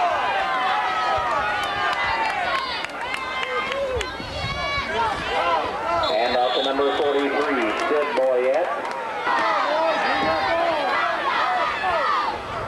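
Football spectators' many overlapping voices, talking and shouting all at once, with no single voice clear. A few louder yells come around four to seven seconds in, as the play runs and is tackled.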